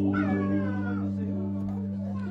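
A woman's sung note sliding downward in pitch, over a steady held chord from the band's instruments.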